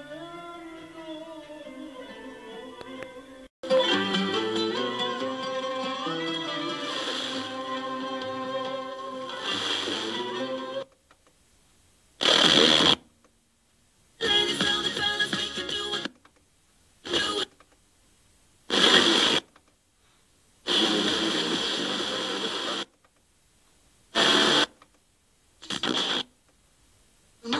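Music from a distant FM broadcast station received via sporadic-E, played through a hi-fi FM tuner. After about eleven seconds the tuner is stepped up the band, and about seven stations come through in short bursts of a second or two, with silence between them.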